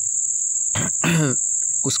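A steady high-pitched whine runs unbroken under the narration. A brief voiced sound from the narrator comes about a second in.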